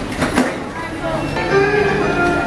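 Indistinct crowd voices and shuffling in a busy station, with a couple of short knocks near the start. Background music with sustained notes comes in a little past halfway and carries on.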